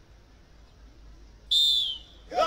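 One short, loud whistle blast about a second and a half in, a steady high tone that dips slightly as it ends: a drill whistle signalling the next movement to recruits doing rifle drill.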